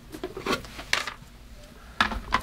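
Plastic lids of marine shower drain boxes being lifted off and handled, giving a few plastic clicks and knocks, the sharpest about a second in.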